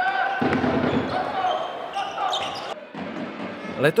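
Live game sound of a basketball match in a sports hall: crowd noise and voices with the ball bouncing on the court, easing off about three seconds in.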